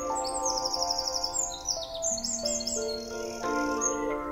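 A small bird singing rapid trilled phrases, twice, then a brief held high note, over background music of sustained chords.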